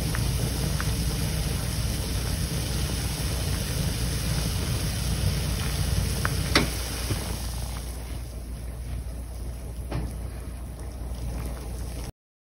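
Konjac (yam cake) pieces boiling hard in a pan of water: a steady bubbling rush. A sharp click comes a little past halfway, after which the sound drops as the boil subsides, with another fainter click near the end.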